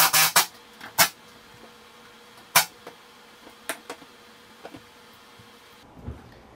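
Cordless drill-driver worked on screws in a shower enclosure's metal wall jamb: a few short, sharp clicks and brief bursts, clustered at the start, then single ones about a second, two and a half seconds and almost four seconds in, with fainter ticks after.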